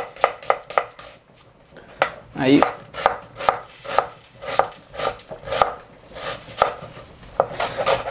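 Chef's knife dicing a red onion on a bamboo cutting board: crisp knocks of the blade through the onion onto the wood. A few quick cuts come first, then after a short pause a steady run of about two strokes a second.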